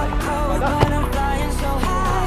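Background music with a steady bass and a melody line, with one sharp knock a little under a second in.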